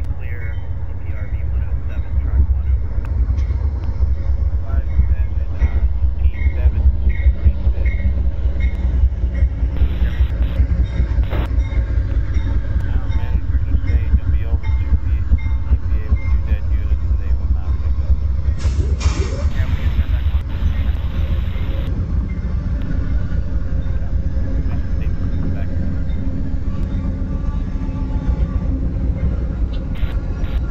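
Amtrak passenger train arriving behind two GE P42DC diesel locomotives: the engines run with a steady low rumble as the locomotives and then the double-deck Superliner cars roll past on the rails. About two-thirds of the way in, a sudden loud burst of noise lasts about three seconds.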